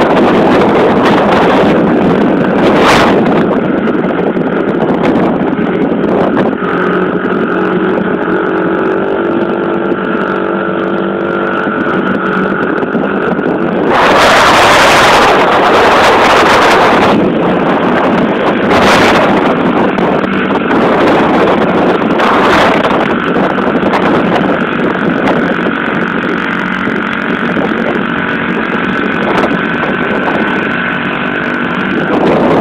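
Small four-stroke pit bike engine running as the bike rides past, its pitch drifting up and down with the throttle. Loud wind buffeting on the microphone for a few seconds about halfway through, with shorter gusts before and after.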